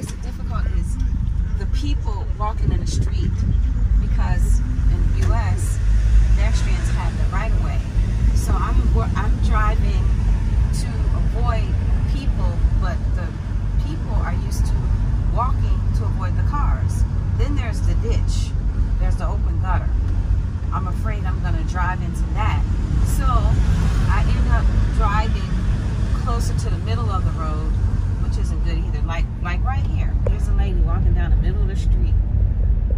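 Steady engine and road rumble inside the cabin of a van on the move, with a voice talking over it.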